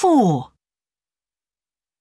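A single spoken word in the first half second, falling steeply in pitch: the recorded examiner reading out the question number "four", followed by silence.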